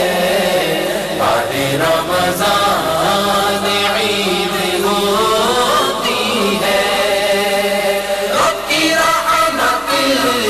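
Devotional Islamic vocal chanting (nasheed-style), voices singing a flowing melody without instruments.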